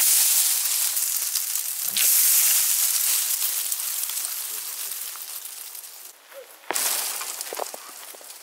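Dry leaves rustling loudly in the trees as a shower of them comes loose and falls, in three sudden surges (at the start, about two seconds in, and near the end), each dying away gradually.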